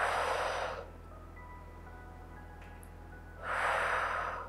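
A woman exhales twice through pursed lips in pursed-lip breathing, each breath a hiss about a second long, one at the start and one near the end. Soft background music plays underneath.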